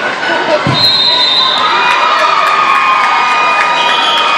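Spectators shouting and cheering at a wrestling match, some voices holding long yells. There is a dull thump about a second in.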